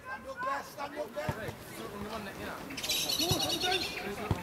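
A referee's pea whistle blown once, a warbling blast about a second long near the end, stopping play. Faint shouts from players and spectators run underneath.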